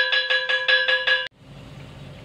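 A brass ship's bell struck rapidly with a wooden mallet, about seven strokes a second, over a steady ring. It cuts off abruptly about a second and a quarter in, leaving a low steady hum.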